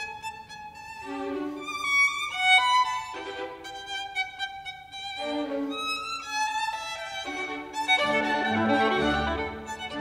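Background music carried by a violin melody of held, wavering notes with vibrato. A fuller, lower accompaniment comes in about eight seconds in.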